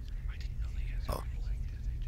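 Quiet dialogue from an animated character, spoken in Khmer, with the clearest word about a second in, over a low steady rumble.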